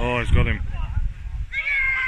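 Shouts from players across a football pitch: a loud call right at the start that falls in pitch, and a second, high-pitched call near the end, over low wind rumble on the microphone.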